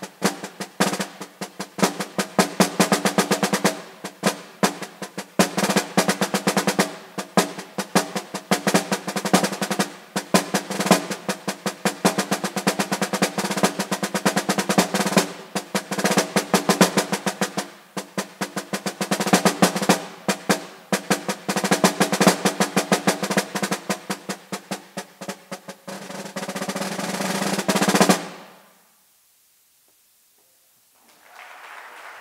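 Snare drum played with sticks in a solo etude: fast, dense strokes and rolls. Near the end a sustained roll swells louder and stops sharply, followed by a couple of seconds of silence.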